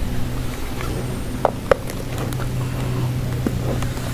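A cardboard presentation box being handled and opened, giving a few light clicks and taps, over a steady low hum.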